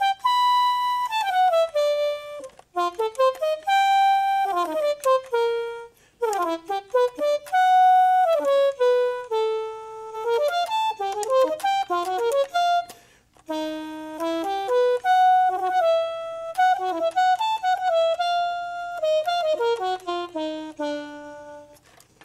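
Yamaha YDS-150 digital saxophone played on its C08 preset, one of its non-saxophone instrument voices: a single melodic line of quick runs and held notes, broken by a few brief pauses.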